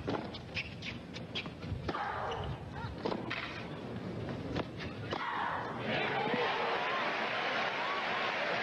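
Tennis racquets striking the ball in a rally: a series of sharp hits, about a second or more apart. About five seconds in, crowd applause and cheering take over and grow louder.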